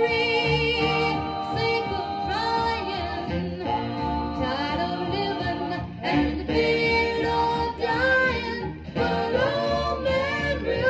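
A 1957 R&B vocal group harmony record playing from a 45 rpm vinyl single on a turntable: several voices singing in harmony, with long held notes.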